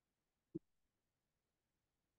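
Near silence: faint room tone, broken once, about half a second in, by a single short knock.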